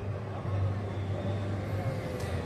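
City street traffic: a steady low hum of cars, with one engine's faint pitch falling slowly as it passes.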